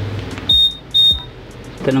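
Honda ADV 160 scooter's answer-back beeper sounding two short, high beeps about half a second apart, set off by pressing the button on its smart key.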